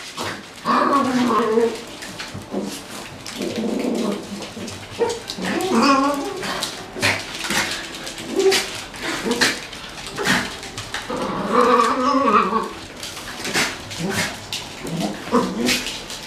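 Several dogs play-fighting, with growls and whines in short, wavering bouts, mixed with light clicking of claws on a hard floor.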